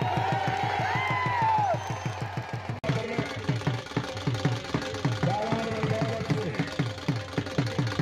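A drum beaten in a steady quick rhythm, about four beats a second, with a man's voice over a loudspeaker rising and falling above it in the first two seconds.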